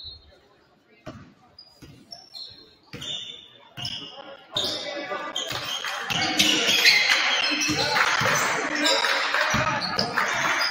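A basketball bouncing on a hardwood gym floor in a large, echoing hall. There are single bounces at first. From about four and a half seconds in, it is dribbled up the court amid short sneaker squeaks and shouting from the players and crowd.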